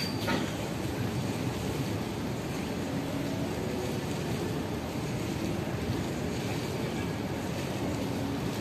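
Steady background rumble of distant city traffic, with a single sharp knock about a quarter second in.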